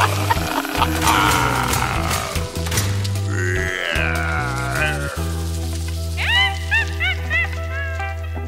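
Instrumental children's-song music with a steady bass line and no singing. About three and a half seconds in, a wavering gliding tone falls away. In the last two seconds a run of about five short rising-and-falling chirps plays over a held chord.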